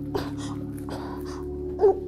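A steady low drone of background music, with soft breaths, then a short whimpering voice sound from a person near the end.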